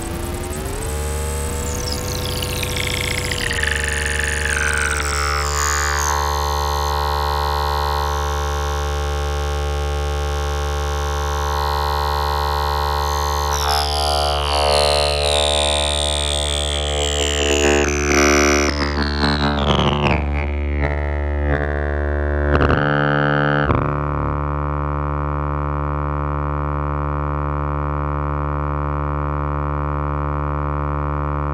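Ciat-Lonbarde Peterlin, a Benjolin-circuit synthesizer, droning on one oscillator through its filter and rungler: a buzzy, many-toned sound that twice sweeps down from high to low as the filter is turned. It breaks briefly a little past the middle, then settles into a steady, darker drone.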